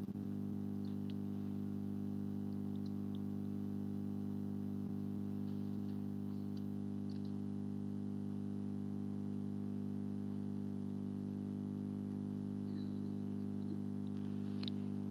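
Steady low hum made of several fixed tones held at one level, with a few faint clicks and ticks over it.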